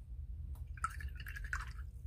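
Small watercolor brush rinsed in a jar of water: a little over a second of swishing and dripping, starting about half a second in.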